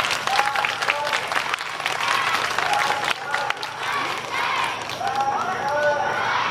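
Audience clapping, with several voices calling out over the applause.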